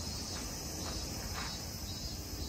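Insects singing steadily in a continuous high-pitched shrill, over a faint low rumble.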